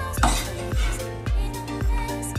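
Background music with a steady beat, over a cleaver chopping green onions on a wooden cutting board.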